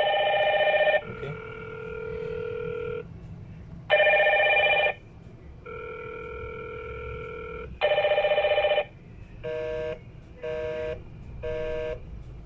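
Two Hikvision video intercom indoor stations ringing together for an incoming call, two ring patterns alternating: a loud chord-like ring about once every four seconds with a softer, lower ring in between. Near the end the ringing gives way to three short beeps about a second apart.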